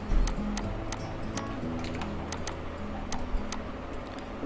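Computer mouse buttons clicking: about a dozen sharp clicks at uneven intervals, over a low steady hum.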